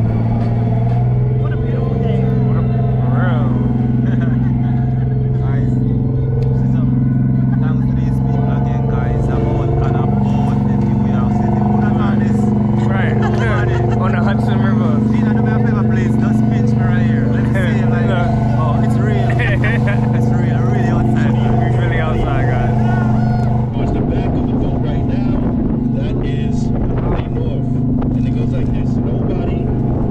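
Ferry engine running with a steady low drone that shifts slightly in pitch about three-quarters of the way through, with passengers chattering on the open deck.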